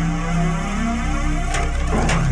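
Dark, low sustained chord from a dramatic music score, held steady, with a couple of sharp percussive hits near the end.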